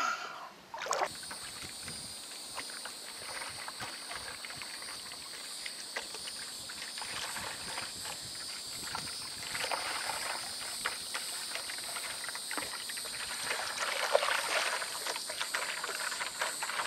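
Paddle strokes and water sloshing around a stand-up paddleboard gliding on calm water, under a steady, high-pitched insect chorus from the marsh at dusk.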